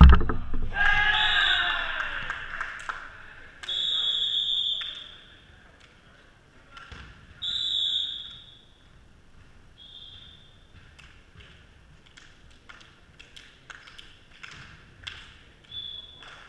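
A volleyball slams onto the gym floor, and players shout for a couple of seconds as the rally ends. Then come a few brief high squeaks of sneakers on the hardwood court, with scattered footsteps.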